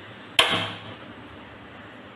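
Gas stove burner lighting: one sharp pop as the gas catches, about half a second in, dying away quickly. It lights on the lowest flame.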